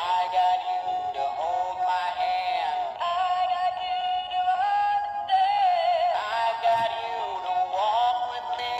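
Valentine's plush gorilla pair playing its built-in song, a thin, tinny recording of a singing voice and tune from a small toy speaker, starting as the button is pressed.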